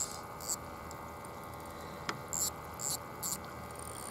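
Steady faint hum of a battery air pump aerating a bait bucket, with a few short, high clicks from hands working a spinning reel and its line.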